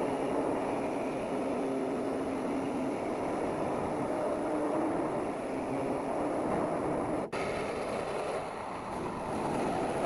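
Handheld power tool cutting through the sheet-metal roof of an old pickup cab, running steadily. The sound breaks off for an instant about seven seconds in.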